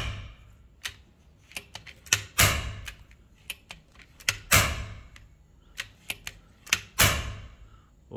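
FX Impact M3 PCP air rifle fired repeatedly: three sharp shots about two seconds apart, each with a short decaying tail and a smaller click just before it, and another shot right at the start. The shots draw down the first-stage regulator's pressure, which is being tested for how fast it recovers.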